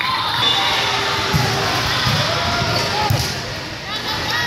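Indoor volleyball hall din: a few dull thuds of volleyballs being hit and landing, over the overlapping chatter and calls of players and spectators, with the echo of a large hall.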